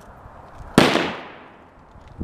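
A single gunshot about three-quarters of a second in, a sharp report whose echo dies away over most of a second.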